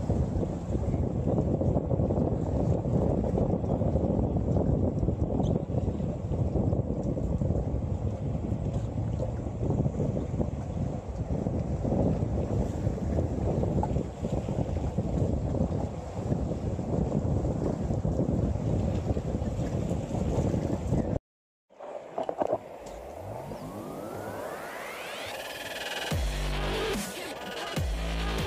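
Wind buffeting the microphone: a steady rough rumble of gusts. It cuts out abruptly about 21 seconds in, and a sound made of several tones rising in pitch follows near the end.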